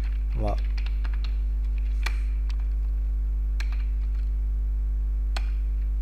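Computer keyboard typing in scattered, irregular key clicks over a steady low mains hum.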